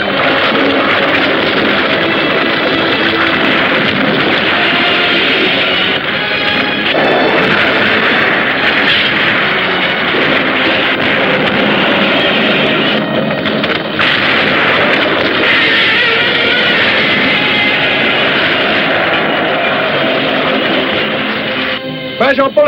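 Film soundtrack of loud rock-and-roll band music with electric guitar, with the booms and crashes of a giant-monster attack mixed in. The texture of the sound changes about six to seven seconds in.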